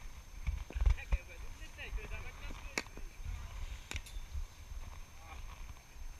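Wind buffeting a GoPro's microphone, loudest about a second in, with faint distant voices and two sharp clicks about a second apart near the middle.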